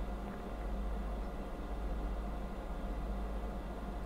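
Steady low hum with a faint even hiss of background noise, with no other sound standing out.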